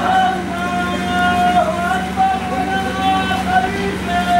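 A crowd of marchers chanting slogans together in long, held notes, over a steady low hum.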